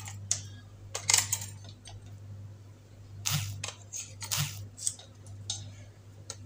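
Clicks, taps and light scraping of a stainless-steel battery-operated pepper grinder being opened and its batteries handled. Several short sharp clicks come spread through, over a steady low hum.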